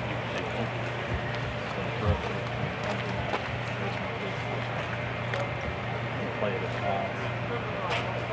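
Indistinct, low voices of people talking at a distance over steady outdoor background noise, with a steady low hum and a few faint clicks.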